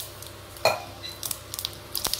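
Mustard seeds sizzling and popping in hot oil and ghee in a steel kadai, scattered short crackles over a steady hiss. A single sharp metallic clink rings out about two-thirds of a second in.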